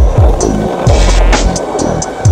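Hip-hop beat with deep, pitch-dropping kick drums and sharp snares, over the rumble of skateboard wheels rolling on pavement.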